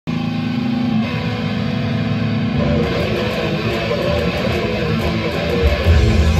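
Electric guitar playing a rock song: held notes at first, a change about three seconds in, and a heavy low bass joining near the end.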